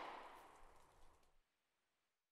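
Near silence, with only the fading tail of the song's last sound dying away in the first moment.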